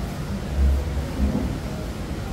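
A low, uneven rumble that swells about half a second in, with a faint voice in the background.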